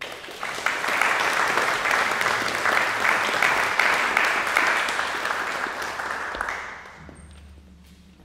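Audience applauding as a piano piece ends, breaking out all at once and dying away after about six and a half seconds.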